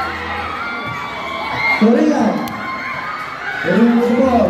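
Courtside basketball crowd, many of them youngsters, shouting and cheering over one another, with a louder single voice calling out about two seconds in.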